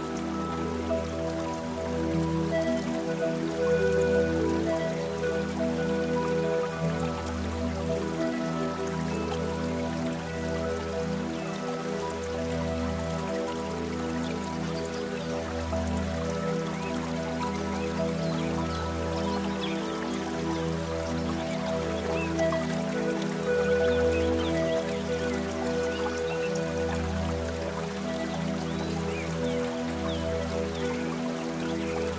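Soft, slow piano music with held notes over a low tone that swells and fades every couple of seconds, with a faint patter of rain or dripping water underneath.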